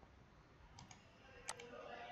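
Computer mouse clicks over near silence: a quick double click a little under a second in, then a single sharper click about halfway through.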